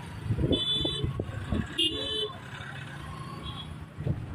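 Vehicle engines running with a steady low hum, and two short horn toots, about half a second in and about two seconds in.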